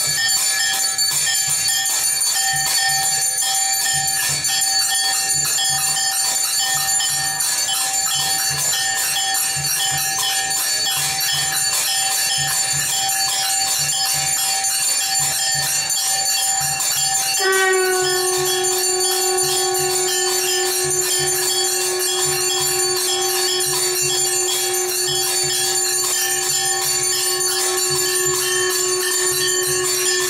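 Temple bells and small jingling bells ringing continuously during an aarti, over a low steady beat. A little past halfway a long held steady tone comes in and sustains.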